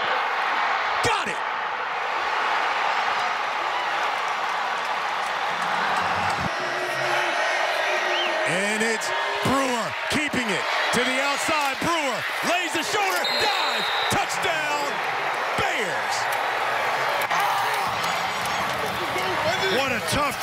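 Football stadium crowd noise: many voices cheering and yelling together, with a dense stretch of rising-and-falling shouts in the middle and a brief high whistle about two-thirds of the way in.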